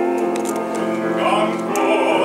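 Baritone singing a Korean art song with grand piano accompaniment, holding long notes that then move to a new pitch.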